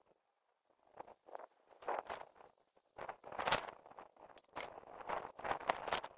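Hand trigger-spray bottle squeezed over and over, giving an irregular run of short, faint hisses, about two or three a second.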